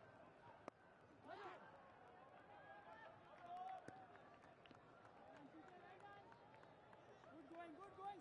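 Faint cricket-ground ambience: distant voices and crowd murmur, with one sharp click about a second in as the leg-spin delivery reaches the batsman's end.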